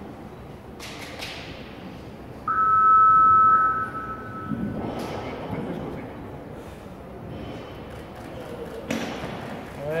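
Weightlifting competition clock's 30-second warning signal: a steady two-tone beep lasting about a second and a half, a few seconds in. Near the end there is a thud as the loaded barbell is pulled from the platform in a snatch.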